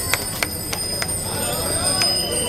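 Crowd of spectators clapping in scattered, irregular claps and chattering as a pack of cyclists sets off, with the voices growing louder toward the end.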